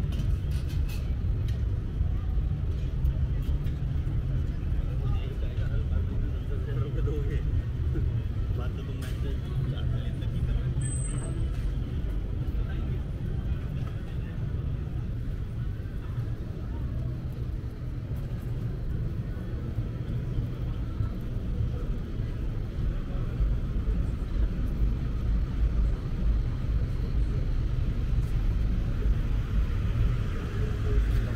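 Busy outdoor city ambience: a steady low rumble with passers-by talking.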